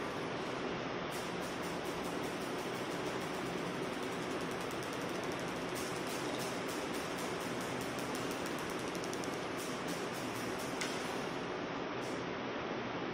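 A steady, even hiss of background noise, with no clear knocks or clicks standing out.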